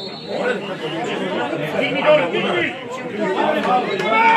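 Several people talking at once, overlapping chatter without a clear single speaker.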